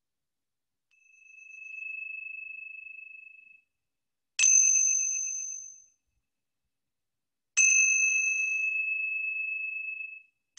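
A small high-pitched chime sounds three times, with no speech. A first clear tone swells in about a second in and fades, then two sharp strikes near the middle and near the end each ring out slowly.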